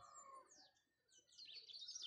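Faint birdsong: a series of short, high chirps and quick downward-sliding notes.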